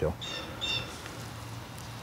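A bird giving two short, high chirps about half a second apart, over a faint steady low hum.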